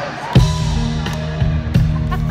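A live band kicks into a song with a sudden loud hit about a third of a second in, then plays on with held bass notes and chords and a few drum strikes.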